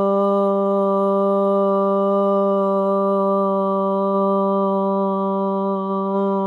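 A woman chanting one long, unbroken OM, her voice held on a single steady pitch.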